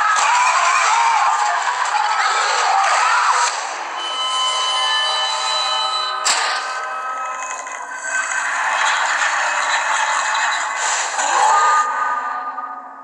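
Film trailer soundtrack: a dense, noisy mix of effects gives way to a held drone of steady tones, cut by one sharp hit about six seconds in, then swells again just before the title card.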